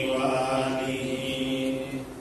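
A man chanting a devotional verse through a microphone, holding one long, steady note that ends about two seconds in.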